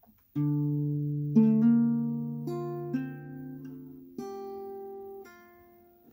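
Acoustic guitar with a capo on the first fret, playing a slow picked chord phrase. A low note rings out about half a second in, then single notes are picked one after another over it, about six of them, each ringing on and fading.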